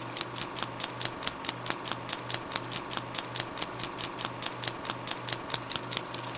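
Film projector running: rapid, even clicking at about five a second over a steady hum.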